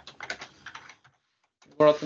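Typing on a computer keyboard: a quick run of key clicks over about the first second, then a short silence.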